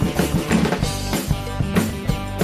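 Background music with a steady drum-kit beat.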